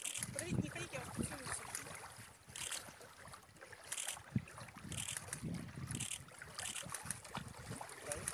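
Shallow water splashing softly in short bursts at the shoreline, with faint murmured voices.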